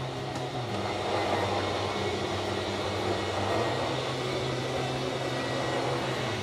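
Steady electric whirring hum of a travel trailer's 12-volt slide-out system, two motors, one on each side, running the dinette slide-out room back out.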